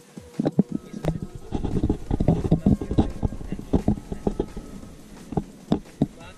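Handling noise on a GoPro's waterproof housing: a dense run of muffled knocks and rubbing, thickest in the middle, thinning to a few separate knocks near the end.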